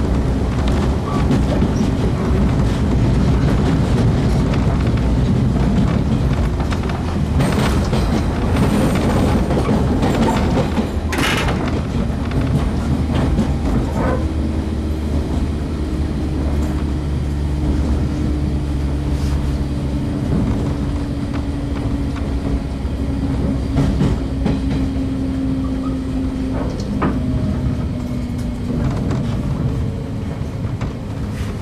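Inside a JR 115-series electric train's motor car while it runs: a steady low rumble with a level motor hum, and a few sharp wheel clacks over rail joints, the loudest about eleven seconds in.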